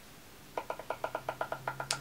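Eyeshadow brush being tapped off to shake loose excess powder before application: a fast, even run of light clicking taps, about ten a second, starting about half a second in.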